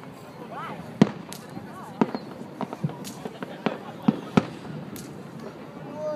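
Fireworks exploding in the sky: a string of sharp bangs, irregular but roughly a second apart, the loudest about a second in and again near four seconds in.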